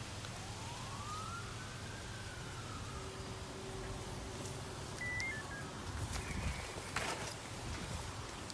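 An emergency vehicle siren wailing: one slow rise and fall in pitch over the first three seconds, over a steady low rumble, with a sharp knock about seven seconds in.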